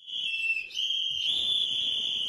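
Hand-held whistles blown continuously, making one shrill, steady note that dips and then steps slightly higher in pitch about two-thirds of a second in.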